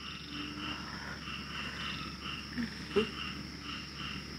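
Night chorus of insects and frogs: a steady high drone with short chirps repeating irregularly, about three a second. There is a faint click about three seconds in.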